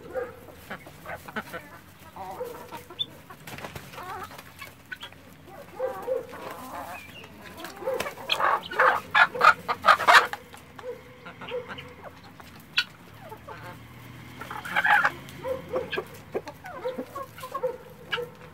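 A mixed flock of domestic chickens and helmeted guineafowl calling and clucking, with a loud bout of rapid, repeated calls about halfway through and another shorter one a few seconds before the end.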